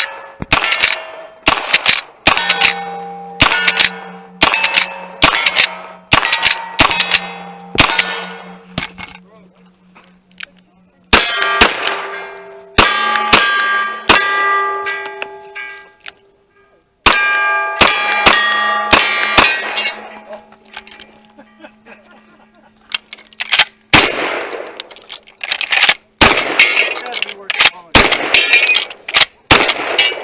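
A string of gunshots, each followed by the ringing clang of a hit steel plate target: first about ten rifle shots roughly a second apart, then two quick groups of about five revolver shots. Near the end come heavier shotgun shots on knock-down targets.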